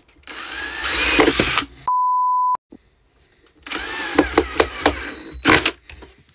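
Cordless drill driving screws into wood in two bursts, each with a rising whine as the motor spins up; the second ends in a run of sharp clicks. Between them, a short steady beep tone.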